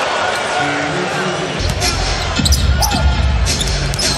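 Arena game sound from an NBA basketball game: steady crowd noise with a ball bouncing on the hardwood court. There are several short sharp knocks in the second half, and the sound grows fuller from about a second and a half in.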